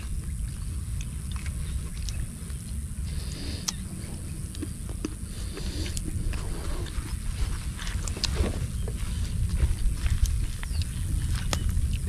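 A small wood campfire burning with scattered sharp crackles, over a steady low rumble.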